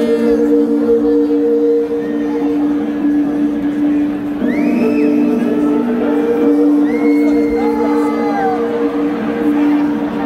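Sustained low synth drone chord played through an arena PA, held steady, with crowd shouts and whoops rising over it around the middle.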